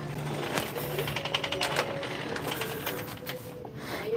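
Metal shopping cart being pushed, its wire basket and wheels rattling in a quick run of clicks, busiest in the first half, over faint steady background music.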